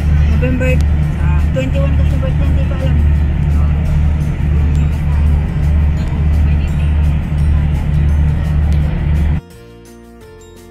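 Loud low drone of a ferry under way, its engines and the rush of water and wind, pulsing evenly. About nine seconds in it cuts off suddenly to quieter background music.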